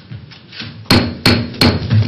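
Three sharp knocks in quick succession, evenly spaced about a third of a second apart, the courtroom signal that the judge is entering and all should rise.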